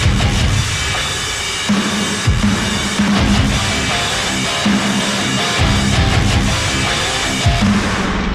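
Instrumental passage of a heavy metal song: distorted electric guitars, bass and drum kit playing without vocals.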